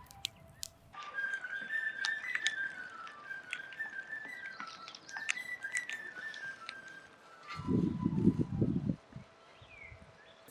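A fife playing a melody of held notes, with sharp crackles from an open wood fire. A brief low sound comes near the end.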